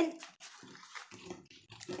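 Faint rustling and light taps of paper and cardstock die-cuts being shuffled by hand, after a drawn-out spoken syllable that trails off at the start.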